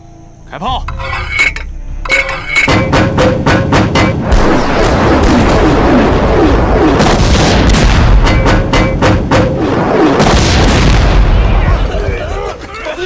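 Film battle sound effects: a run of sharp gunshots starting under a second in, then a loud, continuous din of gunfire and explosions with men shouting.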